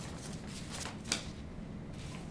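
Sheets of paper rustling as they are shuffled and leafed through by hand, with a sharper rustle a little past a second in.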